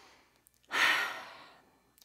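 A woman's deep breath let out as an audible sigh, starting under a second in and fading away over about a second, after the faint tail of the in-breath at the start.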